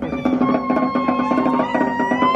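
Polynesian drum music with a fast, even patter of wooden strikes, typical of Tahitian log-drum playing for dancers. The deep bass drum drops out at the start, and a long held high note with slight bends in pitch sounds over the patter.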